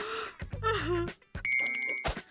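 A girl's brief whimpering sob, then a bright bell-like chime that starts about one and a half seconds in and rings steadily.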